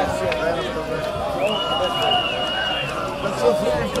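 Several voices calling and shouting over one another on an open football pitch, with one long, steady referee's whistle blast of about a second and a half near the middle.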